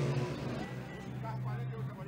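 Quiet broadcast background between commentary lines: a low steady hum with faint voices and music underneath.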